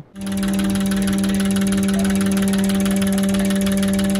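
Fuel injector cleaner and tester firing four fuel injectors into graduated cylinders: a steady electric buzz with very rapid, even clicking. It starts a moment in and runs without change, as the bench imitates a car's injector pulses at ordinary driving load.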